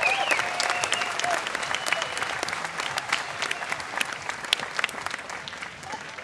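Audience applauding at the end of a pipe band's performance, the clapping dying down toward the end.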